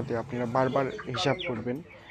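A flock of broiler chickens clucking, under a man's voice talking; the sound drops off briefly near the end.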